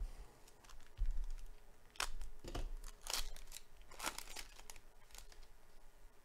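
Foil trading-card pack wrapper being torn open and crinkled: a series of sharp crackling rustles, with a dull bump of handling about a second in.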